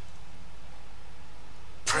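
A steady low hum in a pause between spoken phrases. Just before the end, a man's loud shouted word breaks in suddenly, with a reverberant tail.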